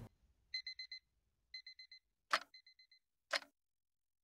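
Digital alarm-clock-style beeping, a quick run of four high beeps repeated about once a second three times. Two sharp ticks a second apart follow in the second half, like a clock counting down.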